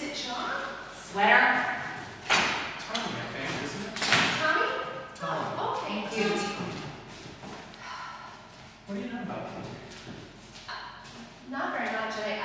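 Voices talking, with a few thuds among them, the sharpest about two seconds in.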